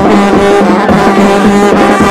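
New Orleans brass band playing loudly, several horns over a steady low held note.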